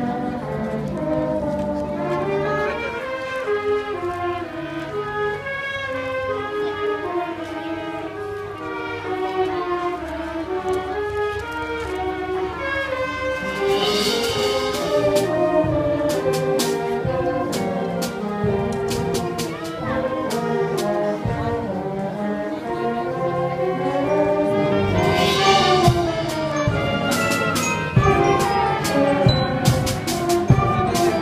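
A student concert band playing a piece, with brass carrying a moving melody over snare and bass drum. Two bright percussion crashes sound, one about halfway through and another later on.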